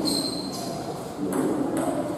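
Table tennis serve and the start of a rally: the celluloid ball being struck by the bats and bouncing on the table, with sharp strokes about a second and a third in and again near the end. A high, ringing tone sounds through the first half-second.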